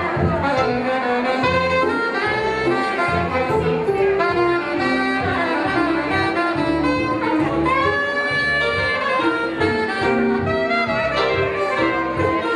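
Soprano saxophone played live, a jazzy melody line moving up and down, over accompaniment with a steady bass beat.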